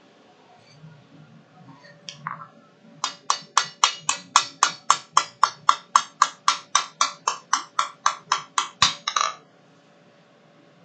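Hand hammer striking a hot steel leaf on an anvil: two blows about two seconds in, then a steady run of about four blows a second for some six seconds, ending in a quick double strike. The blows texture the surface of the forged leaf.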